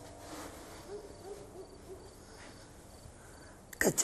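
Quiet soft low hooting, a quick series of about six short notes in the first half, over faint, regularly repeating high chirps like crickets at night.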